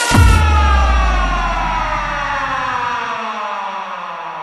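Ending of a techno remix: one last hit with a held bass note, and a synth chord sliding slowly down in pitch as it fades out. The bass cuts off about three seconds in.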